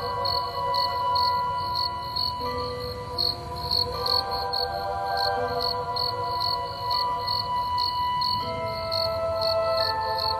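Crickets chirping steadily, about three chirps a second, over soft music of long held notes.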